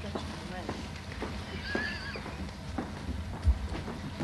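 Room noise of a seated audience in a large hall: scattered knocks and shuffles with faint murmuring over a steady low hum. A brief wavering squeak comes about halfway through, and a single low thump near the end is the loudest sound.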